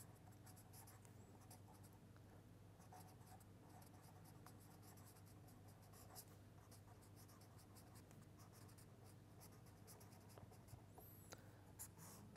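Faint scratching of a felt-tip marker writing on paper, in many short strokes, over a faint steady low hum.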